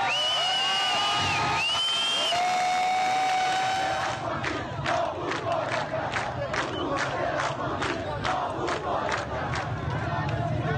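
A large crowd shouting slogans: long drawn-out cries for the first four seconds or so, then rhythmic chanting with sharp strokes about two and a half times a second.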